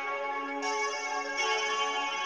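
A sampled guitar melody loop transposed one octave up and run through reverb, playing back as sustained, overlapping notes that shift about every second.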